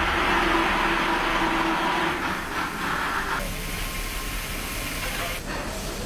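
Steady mechanical hiss and hum of machinery, with the sound changing abruptly about three and a half seconds in and again near the end.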